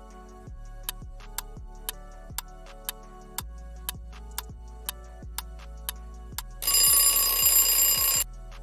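Quiz countdown-timer sound effect: a clock ticking about twice a second over soft background music, then a loud alarm bell ringing for about a second and a half near the end as the time runs out.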